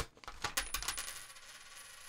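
A Canadian penny dropping out of an envelope onto a desk: a sharp click, then a run of quick small clinks and a thin high ring that fades after about a second as the coin settles.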